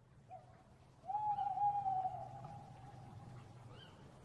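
A single long hooting call that starts about a second in, is held for about two seconds and falls slightly, preceded by a short hoot. A low steady hum runs underneath.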